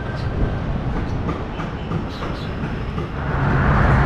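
Outdoor city noise: a steady low rumble of wind on the microphone and road traffic. It grows louder about three seconds in.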